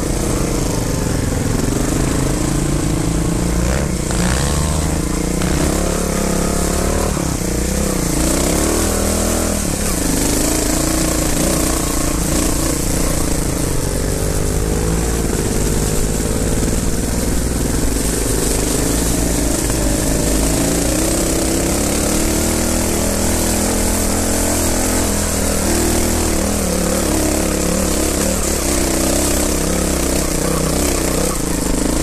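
Trial motorcycle engine running at low revs on a trail climb, its pitch rising and falling with the throttle, over a steady hiss.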